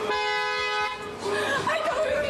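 A car horn sounding one long steady note, which cuts off about a second in; a woman's excited exclamations and a laugh follow.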